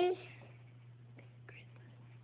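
The tail of a child's drawn-out "I" cuts off just after the start, then near silence with only a faint steady low hum and a couple of tiny clicks.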